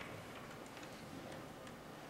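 Quiet handling noise from a handheld microphone being passed to an audience member: faint steady hiss with a few soft, irregular clicks.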